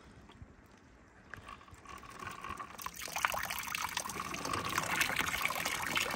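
Water poured from a plastic tub onto plastic sheeting, splashing and trickling down it; it starts faintly and grows louder and steady about three seconds in.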